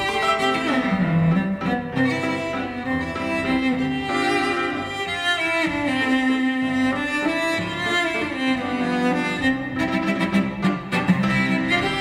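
Cello bowed in a melodic solo passage, long held notes joined by slides from one pitch to the next.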